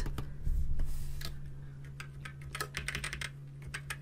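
Computer keyboard and mouse clicks: a scattered run of short, light clicks, some in quick little clusters, over a low steady hum.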